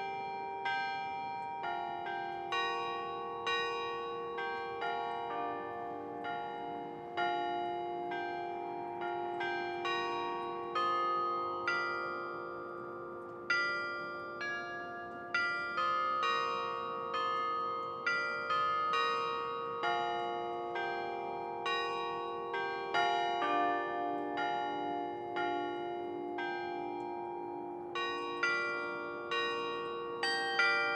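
Carillon bells playing a slow melody, roughly one struck note a second, each note ringing on beneath the next.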